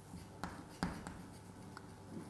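Chalk writing on a chalkboard: faint scratching strokes with two sharper taps of the chalk, about half a second and a second in.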